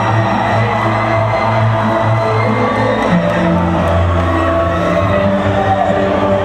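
Live gothic metal band music, led by sustained synthesizer chords over held bass notes that change every second or so, with the crowd cheering.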